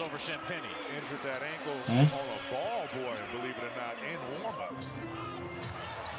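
Television broadcast of an NBA game at low level: a commentator talking over arena noise, with a basketball bouncing on the hardwood court.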